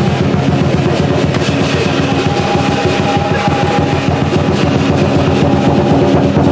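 Lion dance percussion: a Chinese drum beaten in a fast, steady rhythm with clashing cymbals and a ringing gong.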